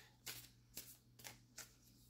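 Oracle cards being shuffled by hand, faint, in about four soft strokes roughly half a second apart, over a faint steady hum.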